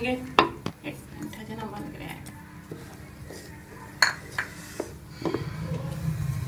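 Wooden spatula stirring thickening milk in a metal pot, knocking and scraping against the pot with a few sharp knocks, the loudest about half a second in and about four seconds in. The milk is being reduced down to rabri.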